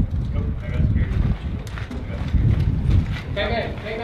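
Boots thudding on a hard floor and the knock and rattle of rifles and gear as a team moves through a building, with brief indistinct voices.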